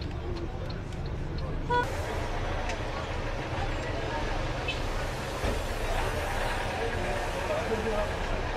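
Steady low rumble of vehicles and traffic, with a short horn toot about two seconds in, followed by indistinct voices of people talking.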